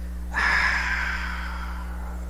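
A man's long breath out, a sigh, close to the microphone. It starts about a third of a second in and fades away over a second and a half.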